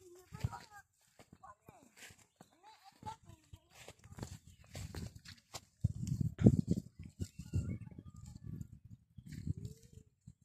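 Rustling and handling noise as a hand reaches into dry grass and picks up a small round fruit, thickest and loudest in the second half. Faint voices in the first few seconds.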